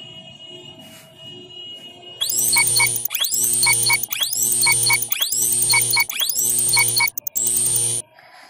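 Countdown-timer sound effect: six identical ticks about a second apart, each a rising whoosh with short electronic beeps, starting about two seconds in. Faint background music before it.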